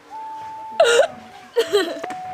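A girl sobbing in short, broken, hiccuping catches of breath: two loud sobs about a second in and near the end, over a steady held tone.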